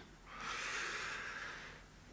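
A man breathing out audibly into close microphones: one long breath that starts about a third of a second in and fades away over about a second and a half.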